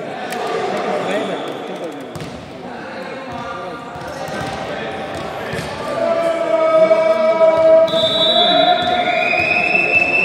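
A volleyball bouncing on the hardwood floor of a large, echoing sports hall between rallies, with men's voices. Over the second half a louder long steady tone comes in, with a higher tone joining near the end and rising slightly.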